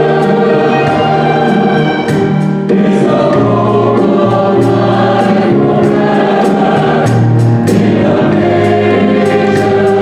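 Mixed choir of men and women singing together with a small band of piano, violin, bass and drum kit, with frequent cymbal and drum strokes through the music.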